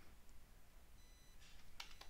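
Near silence: room tone, with one faint click shortly before the end.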